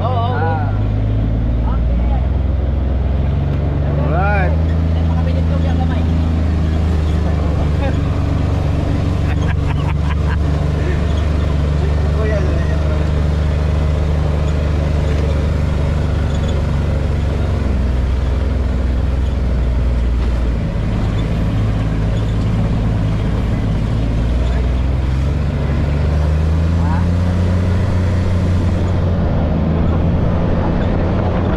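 Polaris Ranger side-by-side utility vehicle running as it drives along, a steady low engine drone. Its pitch drops about two-thirds of the way through and climbs again near the end as the vehicle slows and speeds up.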